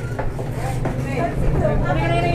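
Voices talking in the background over a steady low hum.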